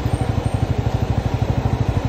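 Bajaj Pulsar NS200's single-cylinder engine running steadily as the bike is ridden slowly, its exhaust giving a fast, even beat.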